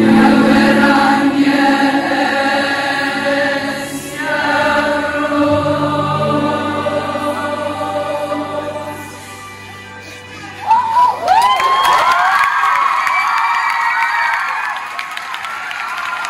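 A large choir of girls' voices singing sustained chords, with the last note fading out about nine seconds in. Moments later a burst of high-pitched screams and cheering breaks out and carries on to the end.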